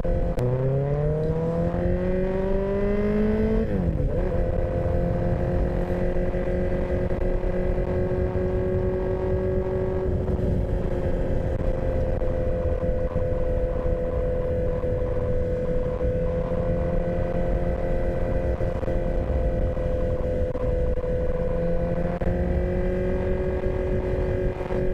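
Sport motorcycle engine under way. Its note climbs for about three seconds as it pulls through a gear, drops sharply at an upshift about four seconds in, then holds steady while cruising.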